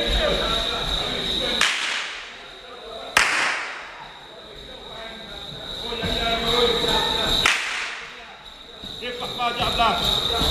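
A carnival masquerader's whip cracking three times, each a sharp crack that rings on in a large hall, the second the loudest.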